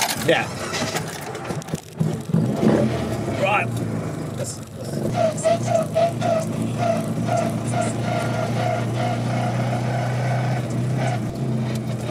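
Classic Mini's A-series four-cylinder engine running steadily under way, heard from inside the cabin. A faint chirp repeats about three times a second through the second half.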